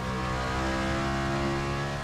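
NASCAR Next Gen race car's V8 engine heard from inside the cockpit, holding one steady note with a rich stack of overtones.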